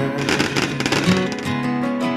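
Background music: a song with guitar and a steady beat, between sung "hey yeah" lines.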